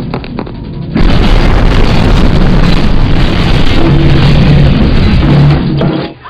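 A bomb explosion: a sudden, very loud blast about a second in, followed by about four and a half seconds of noisy blast and debris that cuts off near the end, with film score music underneath.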